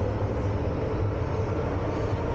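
MTR metro train running, heard from inside the carriage: a steady low rumble of wheels and running gear with a faint steady whine.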